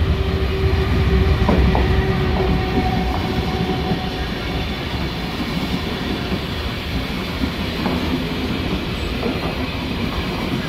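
SBB passenger train with Re 460 electric locomotives pulling out of the station, its coaches rolling past with a steady low rumble. Wheels click over rail joints and points a few times in the first few seconds. A thin steady whine is heard over the first four seconds.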